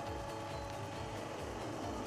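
Electric motor and hydraulic drive of a fishing-line hauling machine running steadily with an even hum.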